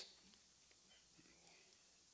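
Near silence: room tone during a pause in a lecture.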